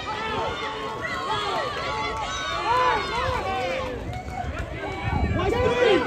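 Several voices calling and shouting at once, overlapping so that no clear words come through. They get louder near the end.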